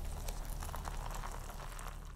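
Bubbling, fizzing liquid sound effect, a crackle of many tiny pops, with low steady music tones beneath; the fizz cuts off suddenly just after the end.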